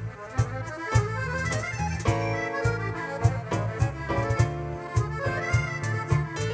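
Instrumental passage by an Arabic-tango ensemble: accordion holding chords and melody over a steady percussion beat of about two strokes a second.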